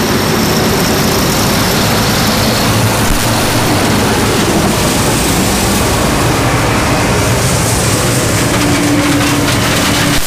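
A Gleaner F combine with its corn head passes right over, harvesting standing corn. Its engine and threshing machinery make a loud, steady, dense noise as the stalks are pulled in. A steadier hum rises out of it near the end.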